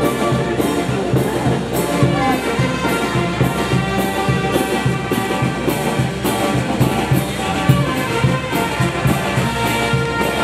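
Andean brass band (banda) playing a dance tune: trumpets and trombones carrying the melody over a steady drum and cymbal beat, continuous throughout.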